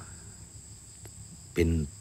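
A steady faint high-pitched whine with a low hum under it, in a pause between a man's words. He starts speaking again about a second and a half in.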